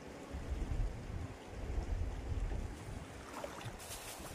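Wind buffeting the microphone in two low rumbling gusts over the steady rush of a shallow stream.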